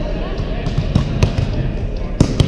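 Volleyballs being hit and landing on a hardwood gym floor: several sharp smacks in quick succession, echoing in the large hall.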